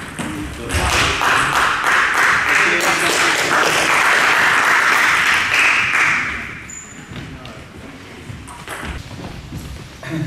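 A small crowd applauding at the end of a table tennis match in a school gym, for about five seconds, then dying away to a few scattered knocks.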